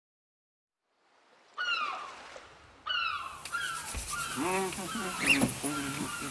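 Two loud, falling bird cries about a second apart come out of silence, followed by a quick run of shorter calls and cries over a faint low hum.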